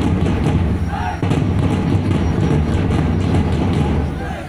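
A troupe beating large waist-slung drums: dense, loud, rapid pounding, with a voice mixed in.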